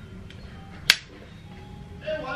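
A single sharp click about a second in, from handling a ceramic flat iron, such as its plates clamping shut on a section of hair.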